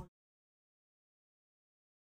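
Total silence: the audio track drops out completely, with no room tone at all, just after the tail of a shouted word fades in the first instant.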